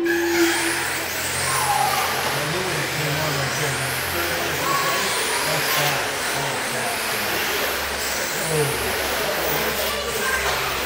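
Several 1/10-scale electric RC sprint cars racing on an indoor dirt oval: a mix of high motor whines rising and falling as the cars pass, over a steady hiss. The sound comes in suddenly at the start.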